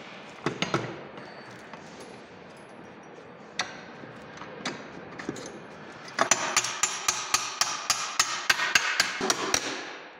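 Light hammer strikes on the steel parts of a tractor seat's suspension. A few single knocks come first, then a quick run of taps, about six a second for some three seconds, each with a short metallic ring.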